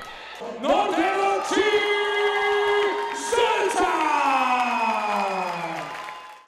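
A ring announcer's drawn-out call over the hall's PA: long held notes, then one long falling glide, with the crowd cheering behind.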